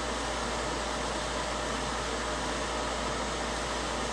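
Steady background hiss with a low hum underneath and no distinct sounds.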